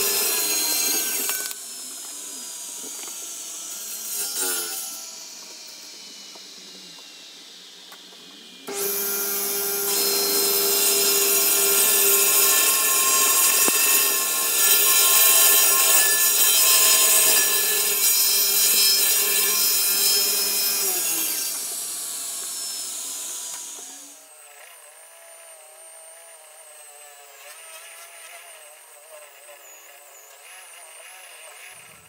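Table saw running, its blade cutting a wooden blank that a drill spins above it, turning it round into a dowel. The sound starts and stops abruptly, and twice the saw's pitch falls away as it spins down, about two seconds in and again around twenty-one seconds in. In the last few seconds a quieter, wavering motor whine is left.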